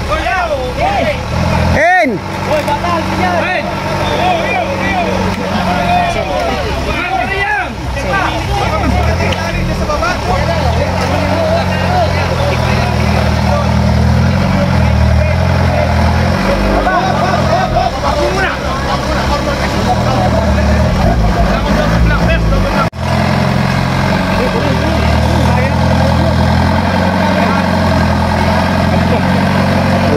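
Off-road racing buggy's engine running under load, its pitch rising and falling as it is revved while the buggy climbs out of a deep mud rut, with spectators' voices over it.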